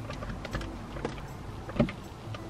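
Faint plastic clicks and rubbing as a clip-on mirror is pushed and clamped onto a car's rearview mirror, with a soft knock near the end.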